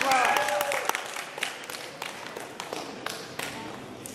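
Scattered hand clapping from a small group of spectators, irregular claps that thin out over the few seconds, as the wrestling bout ends. A shouted voice sounds over it in the first second.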